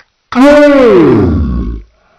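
A deep, distorted, pitch-shifted cartoon voice holding one long drawn-out vowel for about a second and a half. It rises briefly, then slides steadily down in pitch and cuts off.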